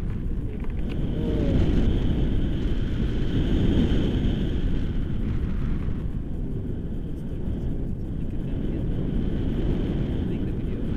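Wind from a paraglider's flight buffeting the action camera's microphone: a steady, low rumble of rushing air.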